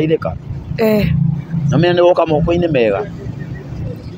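A voice speaking in short phrases over a steady low hum of vehicle traffic.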